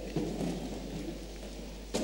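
A congregation sitting down: a low, even rustle and shuffle of many people settling into their seats in a large hall, with one sharp knock near the end.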